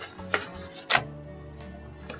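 Pages of a ring-binder journal being turned: two sharp paper flicks, about a third of a second and about a second in, over soft background music.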